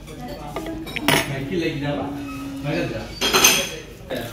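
A metal table knife scraping and clinking as it cuts pizza on a wooden serving board, among plates and cutlery. The louder strokes come about a second in and again near the end.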